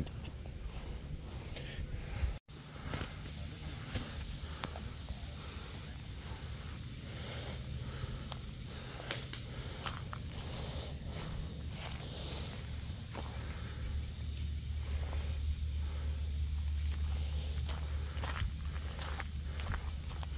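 Footsteps walking along a path, over a low steady rumble that grows stronger in the second half.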